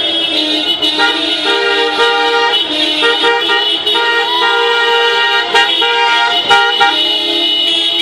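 Several car horns honking at once in long, overlapping blasts, individual horns cutting in and out at different moments.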